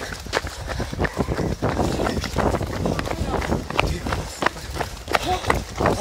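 Running footsteps of several people on asphalt, among them a firefighter in boots and full turnout gear: quick, irregular thuds heard from among the runners.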